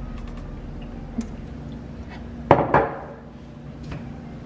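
Two quick clattering knocks of hard kitchen items against a counter about two and a half seconds in, with a short ring after them, over a steady low hum.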